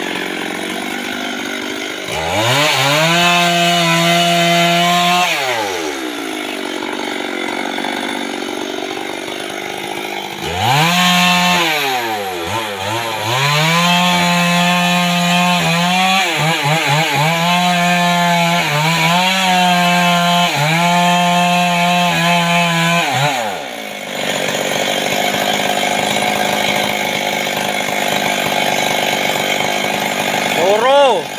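Stihl MS 382 two-stroke chainsaw: it revs up briefly about two seconds in and drops back to idle. From about ten seconds in it runs at full throttle for some thirteen seconds, cutting into the base of a mahogany trunk, with short dips in engine speed. It then falls back to idle for the last six seconds.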